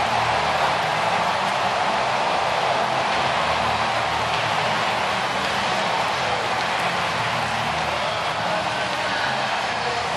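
Baseball stadium crowd cheering a home run: a steady, loud roar of many voices.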